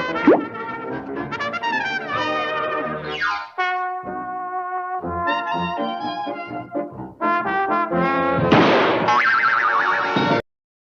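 Slapstick cartoon music led by trombone and trumpet, with comic sound effects. A quick falling swoop comes just after the start and a boing-like falling glide at about three seconds. A held chord and short staccato notes follow, then a loud noisy crash-like burst near the end.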